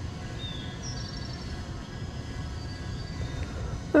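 Steady low outdoor background noise, with a few faint high bird chirps from about half a second to a second and a half in.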